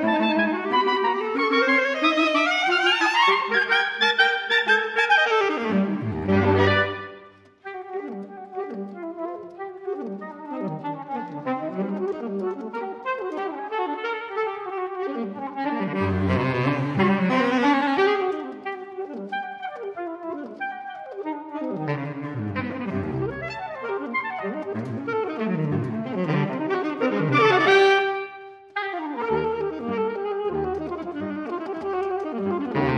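Saxophone quartet of soprano, alto, tenor and baritone saxophones playing classical chamber music. A loud full-ensemble passage with rising runs breaks off about seven seconds in, then quieter interweaving lines swell again around the middle and peak near the end before a brief pause.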